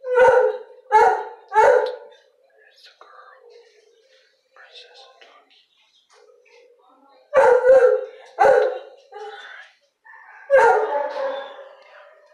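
A dog barking in short, loud barks: three in quick succession at the start, another run of barks a few seconds later, and a longer drawn-out bark near the end.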